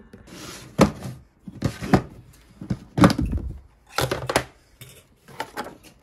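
A clear hard-plastic food storage box being handled on a wooden table: about half a dozen sharp plastic clacks and knocks roughly a second apart, with brief rubbing between them, as its clip-on lid is unlatched and taken off.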